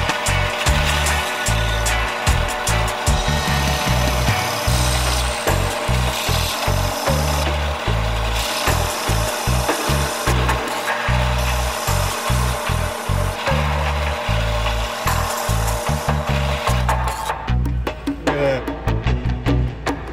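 A Harbor Freight bi-metal hole saw in a drill press grinding steadily through a sheet-metal plate, a continuous rasping cut that fades out near the end as the cut finishes. Background music with a steady beat runs underneath.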